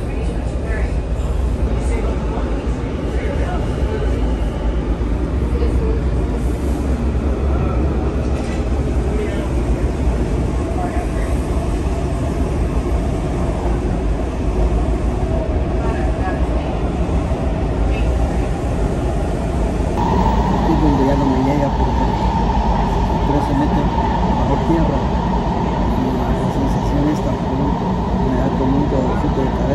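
Steady rumble of a metro train in motion, heard from inside the rail car, with an abrupt change in the sound about two-thirds of the way through.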